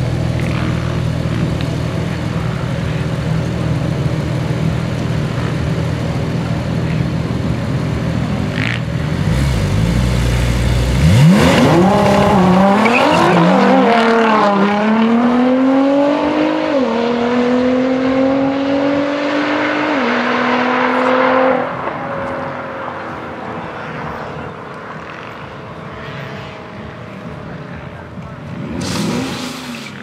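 A Nissan GT-R and a 2014 Porsche 911 Turbo S rumbling low at the drag-strip start line, then launching about eleven seconds in: engine pitch shoots up and climbs through several upshifts, each marked by a short drop in pitch. The engine sound then fades as the cars run away down the strip.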